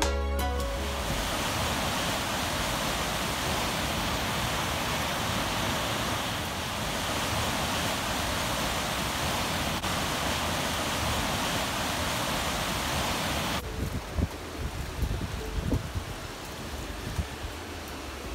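Waterfall's rushing water, a steady, even hiss with no rise or fall. About three-quarters of the way through it cuts abruptly to quieter running water, with low rumbles and knocks of wind and handling on the microphone.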